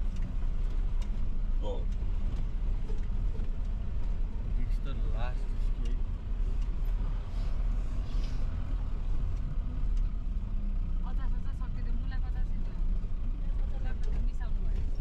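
Steady low rumble of a motor vehicle driving, with faint voices a few times.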